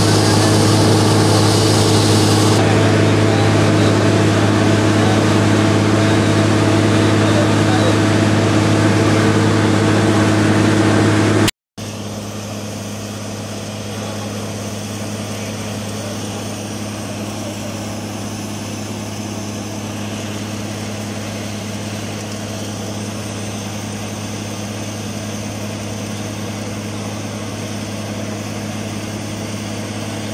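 Borewell drilling rig running steadily with a deep hum, while water and air gush out of the bore around the drill pipe, a sign that the bore has struck water. About a third of the way in there is a brief break, after which the same sound is quieter.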